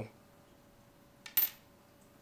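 A brief sharp click, about a second and a quarter in, as the small plastic caster wheel and its rod are handled. Otherwise quiet room tone.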